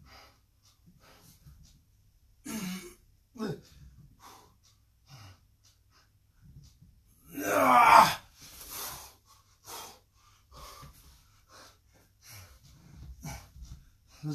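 A man breathing hard and groaning with effort while doing push-up exercises: short, scattered breaths and grunts, with one loud, drawn-out groan a little past the middle.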